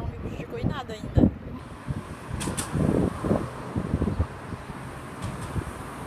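Brief, indistinct voices over a steady background hum.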